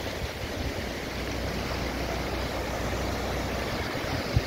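Fast-flowing mountain river rushing over rocks: a steady, even rush of water with a low rumble underneath.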